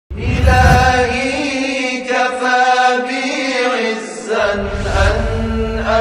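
Opening music: a solo voice chanting in long, wavering held notes over a low backing, which drops out for a couple of seconds midway and then returns.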